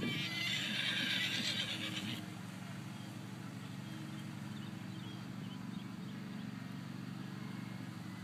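A horse whinnies once for about two seconds at the start, a high, quavering call, followed by a steady low hum.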